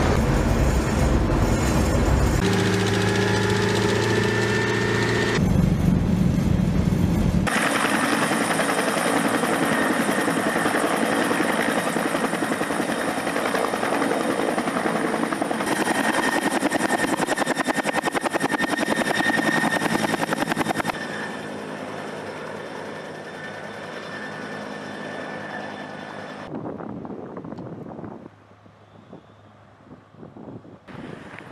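Loud, steady engine noise from military vehicles during an amphibious landing, changing abruptly every few seconds. It drops to a lower level about 21 seconds in and gives way to wind on the microphone near the end.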